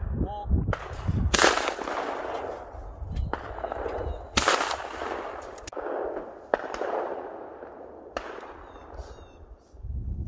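Two shotgun shots about three seconds apart, each with a long echoing tail, fired at a pair of sporting clays from a Blaser F3 over-and-under shotgun. A few fainter sharp clicks follow.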